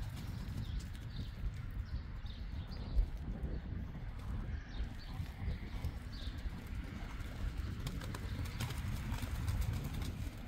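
Hooves of yearling Friesian horses trotting and cantering on sand footing: a continuous run of dull thuds, with one sharper knock about three seconds in.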